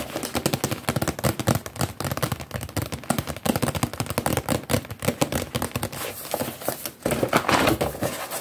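Rapid, irregular tapping and scratching on a box held close to the microphone, many taps a second, with a burst of heavier rubbing near the end.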